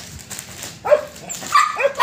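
Young Bắc Hà dog barking once about a second in, then giving a few high yips near the end, in play.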